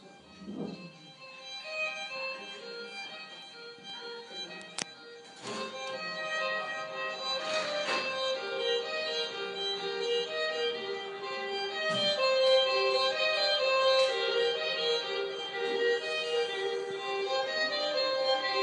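Slow instrumental music led by a violin over held tones, heard through a television's speaker; it swells louder about six seconds in and again around twelve seconds.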